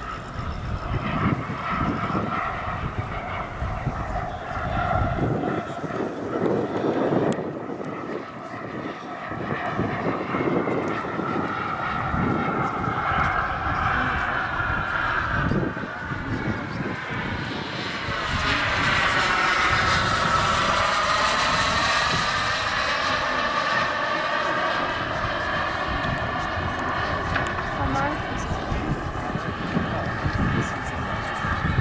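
Jet turbine engine of a giant-scale radio-controlled F-15 Eagle model running in flight. It grows to its loudest about two-thirds of the way through as the jet makes a close pass, then eases off.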